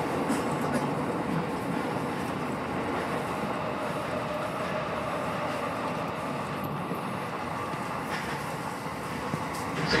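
Tokyo Metro Chiyoda Line subway train running through a tunnel, heard from inside the train: a steady rumble of wheels on rail and running gear, easing slightly in loudness. An onboard station announcement begins at the very end.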